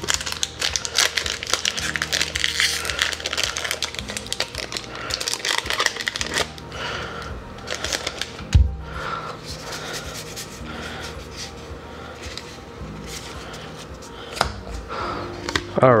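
Foil booster-pack wrapper crinkling as it is torn open and peeled off the cards, followed by quieter card handling with light clicks, and a single thump about eight and a half seconds in.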